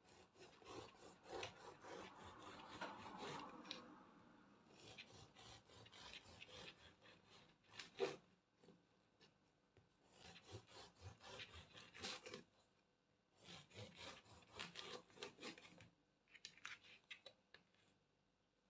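Serrated bread knife sawing through the crust and crumb of a wholemeal loaf: quiet rasping back-and-forth strokes in several bursts, with one sharp knock about eight seconds in.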